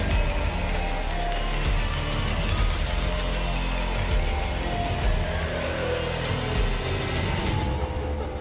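Music for an acrobatic gymnastics group balance routine, with sustained notes over a deep, steady bass.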